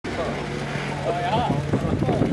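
A car engine running steadily at low revs, with people talking close by.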